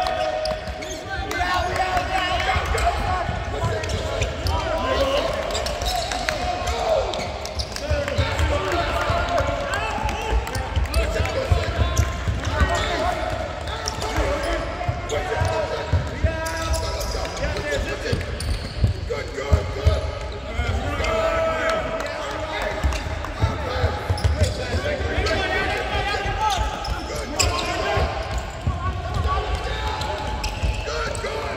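Basketballs bouncing on a hardwood court, with players' and coaches' voices carrying throughout, in a large arena.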